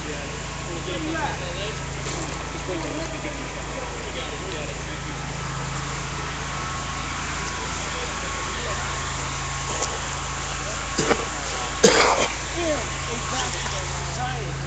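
A steady low engine hum, like an idling motor, under indistinct distant voices, with a sharp knock and a louder voice near the end.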